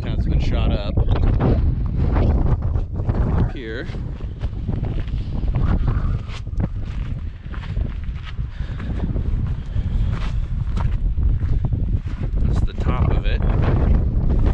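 Wind buffeting a small action-camera microphone, a steady heavy low rumble, with scattered footsteps on loose rock and gravel.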